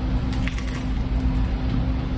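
People biting into and chewing bagels spread with cream cheese, with a few faint crunchy bites and mouth sounds in the first second, over a steady low hum.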